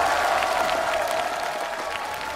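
Studio audience applauding, the clapping slowly fading, with a faint steady tone held underneath.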